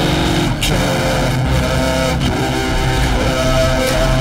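Atonal synthesizer noise music: dense, distorted drones and buzzing tones layered together, with some pitches sliding up and down.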